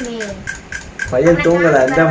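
Voices, ending in a loud drawn-out vocal sound held on one steady pitch from about a second in; a light, rapid clicking, about five ticks a second, runs underneath during the first second.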